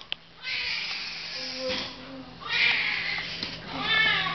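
Newborn baby crying in three wailing bursts, each about a second long with short breaths between.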